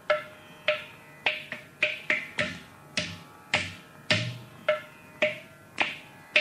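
Mridangam playing alone: single strokes about two a second in a steady pulse, each ringing out on the drum's tuned pitch, some with a deep bass boom.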